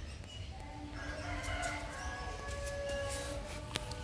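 A faint, drawn-out pitched animal call in the background, held for a couple of seconds over a low background rumble.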